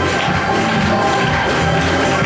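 A live church band with drum kit and electric guitar playing loud, steady worship music.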